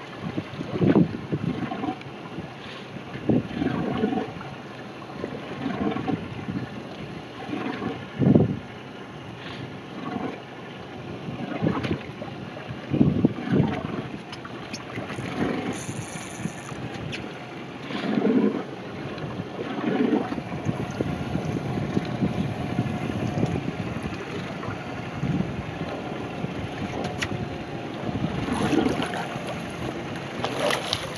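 Wind on the microphone and water against a small boat's hull, with irregular knocks and thumps as a landing net holding a big permit is hauled over the gunwale and the fish is handled on the deck.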